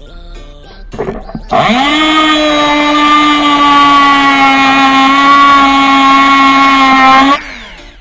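Elektropribor GE-170-VG rotary tool spinning up about a second and a half in to a steady high-pitched motor whine, run against a metal bar. It is switched off near the end, the pitch falling briefly as it spins down. Background music underneath.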